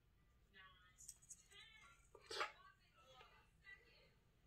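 Near silence with faint background speech. A few small clicks and a brief rustle a little past the middle come from a necklace chain being fastened behind the neck.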